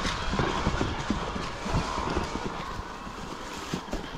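Footfalls: a quick, uneven run of soft thuds, about three a second, over a steady background hiss.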